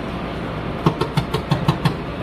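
A steady low drone like an engine running, and over it a quick run of about seven sharp clicks, roughly six a second, from metal tongs clacking against a metal tray of cinnamon sugar while churros are picked up.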